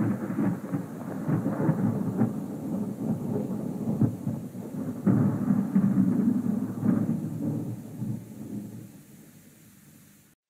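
A loud rumbling noise with several sharp cracks. It starts suddenly and dies away near the end.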